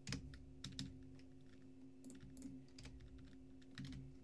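Computer keyboard typing: faint, irregular key clicks over a faint steady low hum.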